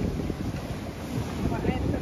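Wind buffeting the phone's microphone with surf breaking on rocks behind it, and faint voices briefly near the end.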